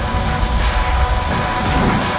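Electronic TV sports-broadcast transition music with heavy bass and a swelling high sweep about half a second in.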